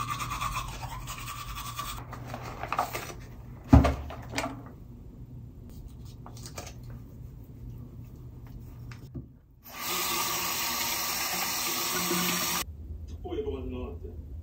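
Toothbrush scrubbing teeth, then a single sharp clack about four seconds in. Later a tap runs steadily into a bathroom sink for about three seconds and stops abruptly.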